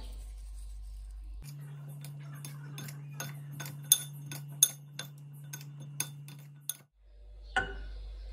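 Two forks tossing a salad in a glass bowl, their tines clinking against the glass many times in an uneven run from about a second and a half in until near the end. A single knock follows near the end.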